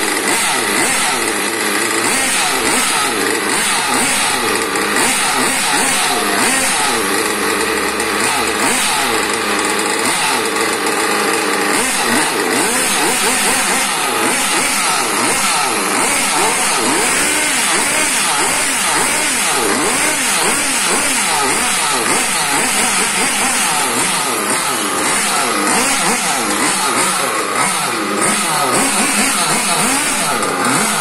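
O.S. Speed glow-fuel two-stroke engine in a Hobao Hyper RC buggy running on a stand, a loud continuous buzz whose pitch wavers up and down throughout.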